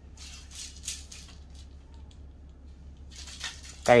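A telescopic carbon fishing rod being handled, its sections and metal line guides rubbing and rattling. The sound comes as short scrapes and clicks, a cluster in the first second and another about three seconds in.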